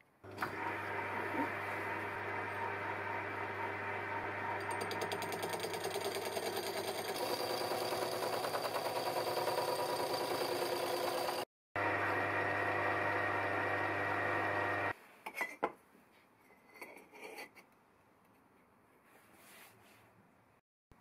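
A metal lathe spinning a hole saw as it cuts a notch into thin-wall steel tube: a steady machine whir with a fast grinding chatter from the teeth in the metal. It breaks off for a moment about eleven seconds in, resumes, and stops about fifteen seconds in, after which there are only a few light knocks.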